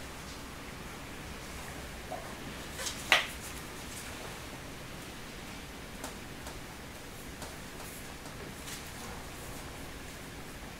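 Quiet room hiss with a few faint taps and one sharper click about three seconds in, from a paintbrush being dipped in a small paint tin and brushed onto a shock absorber.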